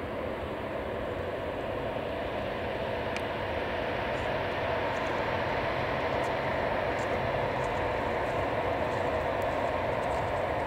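Four jet engines of a Douglas DC-8 running as the airliner moves along the runway: a steady jet rumble with a held whine, growing slowly louder.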